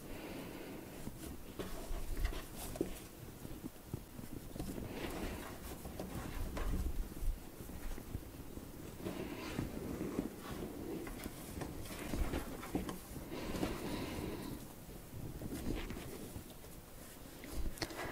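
Faint, soft squishing and patting of hands folding and rolling sticky, wet sourdough dough into a log, in irregular spurts.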